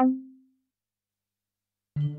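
reFX Nexus 3 software synthesizer on its 'Simple Mutes' arpeggiator preset: the last short plucked note rings out and dies away within half a second. Then silence until a new synth sound starts right at the end.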